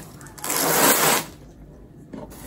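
A brief, loud rustling scrape about half a second in, lasting under a second, as a box of plants is handled and pulled up from below the table.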